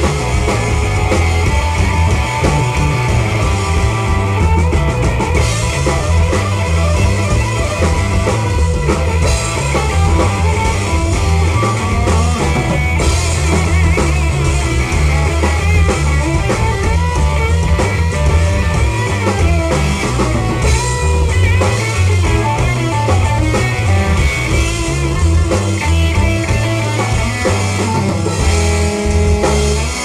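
Live rhythm-and-blues band playing an instrumental passage of a blues number: electric guitar over a drum kit and a steady, prominent bass line.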